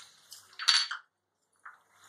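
A brief clatter of a utensil against the cooking pan about two-thirds of a second in, with a shorter knock near the end.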